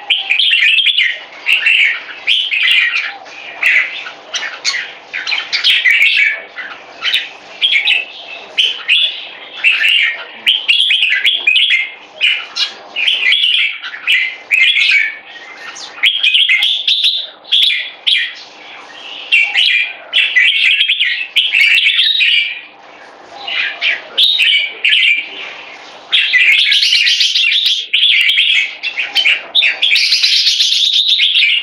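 Caged bulbul singing a long, near-continuous run of quick, loud chirping phrases, broken only by short pauses, and loudest in the last few seconds.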